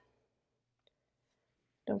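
Near silence, broken by one faint click about a second in; a woman starts speaking right at the end.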